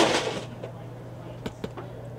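Handling noise from boxes and keepsakes being moved on a dresser: a brief rustling scrape, then a couple of light clicks about a second and a half in, over a steady low hum.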